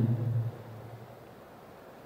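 A man's voice trailing off in the first half second, then a pause holding only faint steady hiss of room noise.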